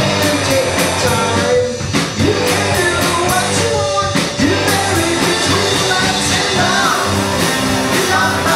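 Live rock band playing: electric guitars, bass guitar and drums, with a man singing lead, loud and steady throughout.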